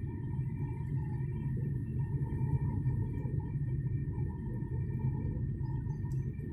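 Steady low rumble of a car's engine and tyres heard inside the cabin, with a faint steady whine above it.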